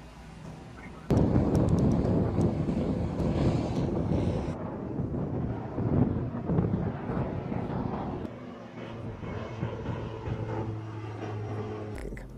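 MQ-9 Reaper's turboprop engine and propeller, starting suddenly about a second in, loud at first and slowly fading. It settles into a steadier low hum over the last few seconds.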